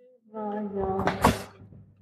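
A door being worked, with one short knock a little over a second in.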